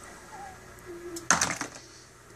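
Quiet workshop room tone, broken about a second and a half in by a single short, sharp knock with a brief rattle after it.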